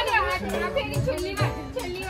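Several people's voices shouting and crying over one another, over background music with a beat.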